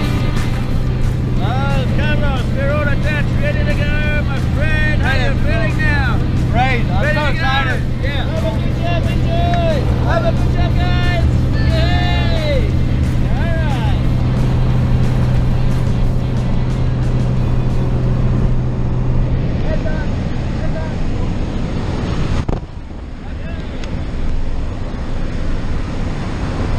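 Steady drone of a small jump plane's engine heard inside the cabin, with raised voices over it in the first half. The drone drops away about three-quarters of the way in, followed by a brief dip in level.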